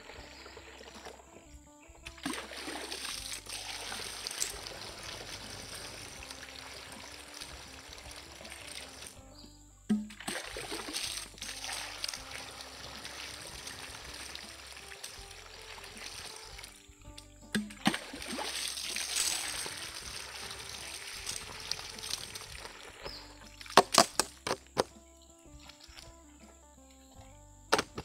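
Water poured from a plastic bucket into a plastic backpack sprayer tank, splashing into the filler opening in three long pours with short pauses between them, then a few sharp knocks near the end. Background music plays quietly underneath.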